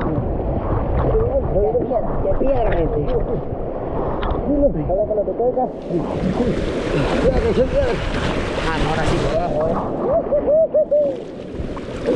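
Fast, muddy river water rushing and splashing around an inner tube sliding down a rock chute, with a steady low rumble. Loud splashing and spray near the middle and again near the end, with people's voices calling over the water.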